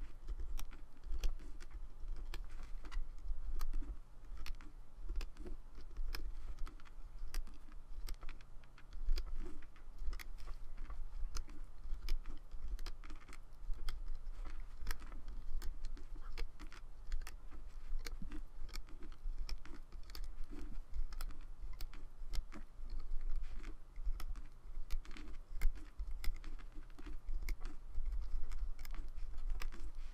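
Rubber bands being stretched over and snapped onto the pins of a plastic Rainbow Loom, with fingers tapping on the loom: a run of short, irregular clicks and taps, several a second, over a low rumble.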